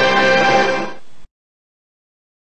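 Music jingle from a television production company's logo: a held chord that fades slightly and cuts off abruptly about a second in, followed by dead silence.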